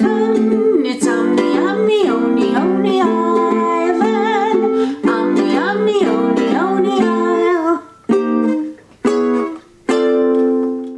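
A woman singing to her own strummed ukulele. About three-quarters of the way through, the voice stops, and the song closes on three separate strummed chords with short gaps between them.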